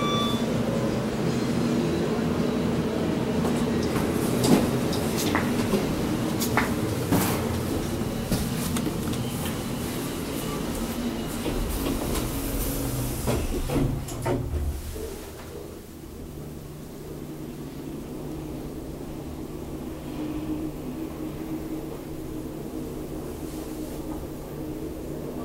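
KONE MiniSpace traction elevator: lobby noise with scattered clicks while the car stands open, then the automatic doors slide shut with a few knocks a little past halfway. After that the car travels with a quieter, steady low hum.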